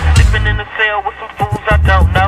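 Hip hop track with a rap vocal recorded over a telephone line. About half a second in, the beat drops out and leaves only the thin, phone-band voice. The beat comes back near the end.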